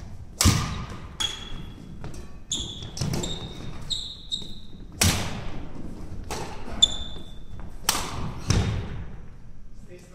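Badminton doubles rally in a large hall: sharp racket strikes on the shuttlecock about every second or so, the hardest smashes ringing out with a hall echo, mixed with short high squeaks of court shoes on the wooden floor.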